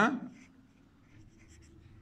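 Faint scratching of a pen writing a word on paper, just after a man's spoken word ends at the very start.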